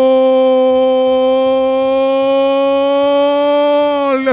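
A male radio football commentator's long drawn-out goal cry, 'gooool', held as one unbroken loud note at a nearly steady pitch: the traditional shout for a goal just scored.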